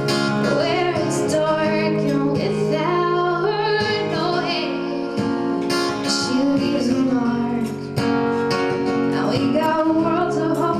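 A young woman singing a song live into a microphone while strumming a steel-string acoustic guitar, with strummed chords under the melody throughout.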